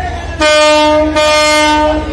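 A passenger launch's ship horn sounds a loud, steady, single-pitched blast starting about half a second in. It breaks briefly just past a second, then sounds again. This is the departure signal as the launch leaves the ghat.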